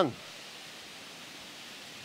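Whitewater rapids rushing, a steady even hiss.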